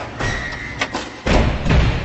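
Cinematic logo-reveal sound effects: rushing swells, then two deep heavy hits about a second in, the loudest moment, with a ringing tail fading out.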